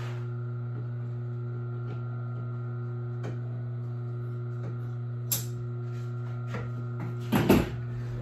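Steady electrical hum from the running workshop equipment, with a few scattered light clicks as the material is trimmed, a sharper click about five seconds in, and a louder knock with rustling near the end.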